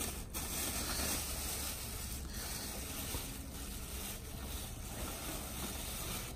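Black plastic trash bag being opened and rummaged through, its thin plastic rustling and crinkling, over a low rumble.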